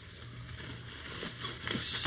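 Faint rustling and crinkling of bubble wrap as a wrapped product is handled, over a low steady hum.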